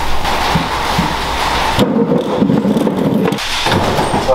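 Manual wheelchair rolling on a rough concrete floor while held up on its back wheels: a continuous rolling noise from the wheels, changing in character about halfway through.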